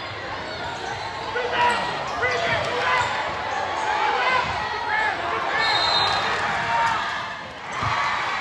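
Basketball game on a gym court: the ball bouncing on the hardwood and sneakers squeaking, under the voices of players and crowd.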